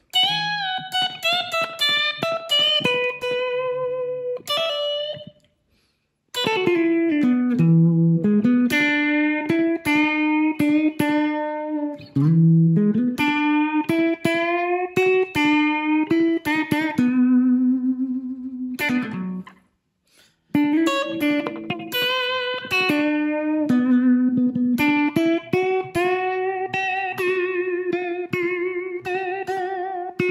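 Unaccompanied electric blues guitar solo on a Telecaster-style electric guitar: single-note phrases with notes bent upward. The phrases break off into short silences about five and a half seconds in and again around twenty seconds in.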